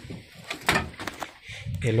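Wooden fence gate being pushed open by hand: a sharp knock of the boards about two-thirds of a second in, then a few lighter clicks.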